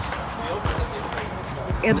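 Outdoor background noise with faint, indistinct voices and a few low thumps; a man starts to speak at the very end.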